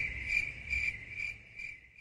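Cricket chirping used as a comedy sound effect for an awkward silence: one high, even chirp that pulses about three times a second and fades out just before the end.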